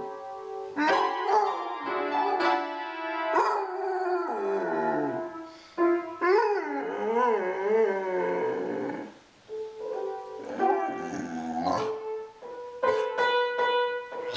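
A hound puppy whining and howling in long, wavering, up-and-down cries, with music that includes piano notes.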